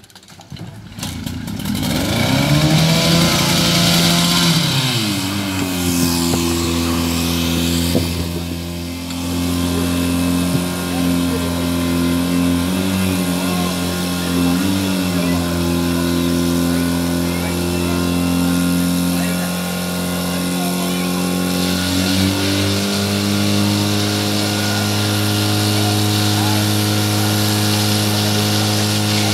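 Engine of an old portable fire pump (Tragkraftspritze) starting about a second in, revving up, dropping back, and then running steadily at high revs. It wavers briefly twice midway and changes pitch slightly near the end.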